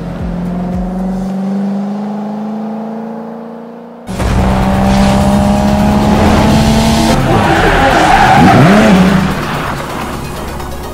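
A 2013 Corvette's 6.2 L LS3 V8 pulls away, its engine note rising slowly as it fades into the distance. About four seconds in, it cuts suddenly to a much louder produced car sound effect of engine and tire-squeal noise with light music, with a whoosh that rises and falls near the end.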